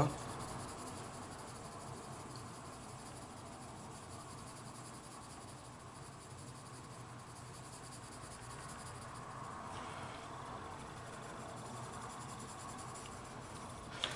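Coloured pencil shading lightly on paper: a faint, fast, steady scratching from many small back-and-forth strokes.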